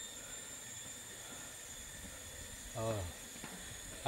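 Faint, steady outdoor background hiss with thin, steady high-pitched tones running through it.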